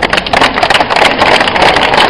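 A crowd applauding: many hands clapping in a dense, steady patter.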